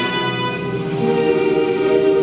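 Musical-theatre orchestral accompaniment playing sustained chords, with a new chord coming in about a second in.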